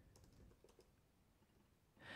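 Near silence with a few faint computer keyboard key clicks, mostly in the first half second, as a word is typed.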